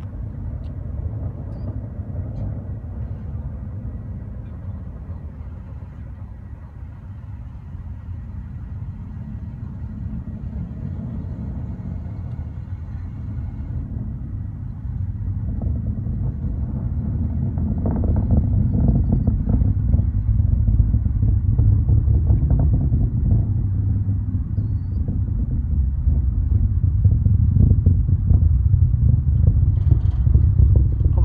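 Distant rumble of a SpaceX Falcon 9 rocket's first stage (nine Merlin engines) climbing after launch, heard from about ten miles away. It is a deep rumble that grows steadily louder, swelling about two-thirds of the way through.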